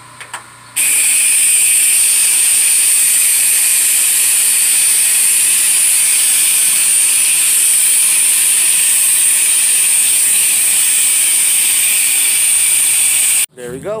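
Soft-wash spray gun jetting roof-cleaning solution onto asphalt shingles at low pressure: a loud, steady hiss that starts about a second in and cuts off suddenly near the end.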